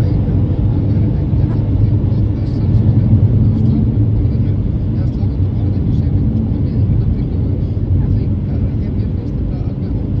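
Car driving along a snow-covered road, heard from inside the cabin: a steady low rumble of tyres and engine.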